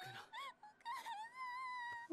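A young girl's voice from the anime's soundtrack, crying out in distress to her parents in a nightmare. It gives short cries, then a long, high, wavering wail through the second half, playing quietly.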